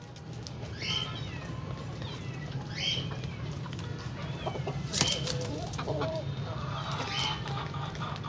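Heera aseel chickens giving short, high calls about every two seconds, with a few thinner chirps in between.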